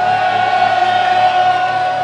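Live rock band playing, with one long high note held over the band for about two seconds before it ends.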